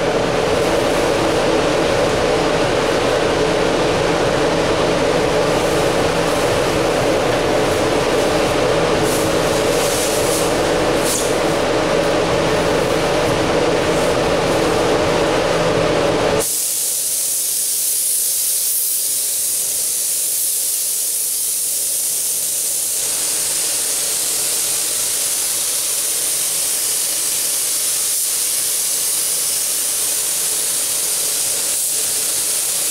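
Steady air-handling noise with a low hum, then an abrupt change about 16 seconds in to the steady high hiss of a paint spray gun laying down a tinted candy mid coat.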